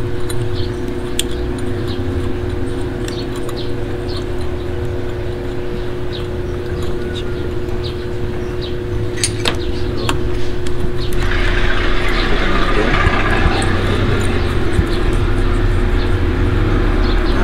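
Light metallic clicks of clutch springs and bolts being handled and seated on a motorcycle clutch pressure plate, over a steady low mechanical hum. A louder hissing noise joins about eleven seconds in.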